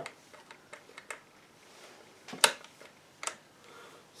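Sharp metallic clicks from a Puch Z50 two-speed moped engine's gearbox as it is worked by hand to check the gears: a string of separate clicks, the loudest about two and a half seconds in. The gears engage as they should.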